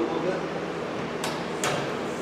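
Two sharp clicks a little under half a second apart, from the car-lifting jacks being worked as the race car is raised.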